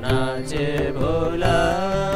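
Men's voices singing a devotional song to harmonium accompaniment, the melody sliding between long held notes over the harmonium's steady chords.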